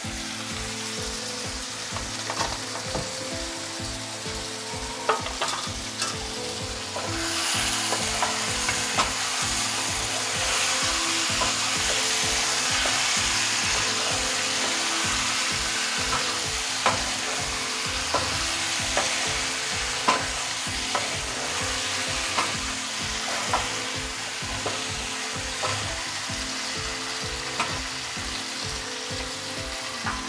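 Chicken pieces in masala frying in a nonstick pan: a steady sizzle that grows louder from about seven seconds in, with scattered clicks of a utensil against the pan as the pieces are stirred.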